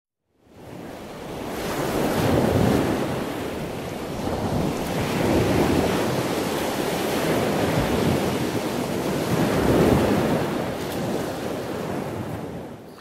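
Wind and water rushing while under sail, an even noise that fades in at the start and swells and eases every few seconds.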